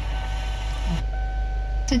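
Sony car stereo's FM radio being tuned between stations: a hiss of static for about the first second, then a lull with only a steady low hum and a faint steady whine. Radio speech comes back at the very end.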